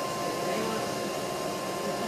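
Steady rushing noise of a bee-removal vacuum running, with a thin steady whine over it, as the bees are sucked out of the hive.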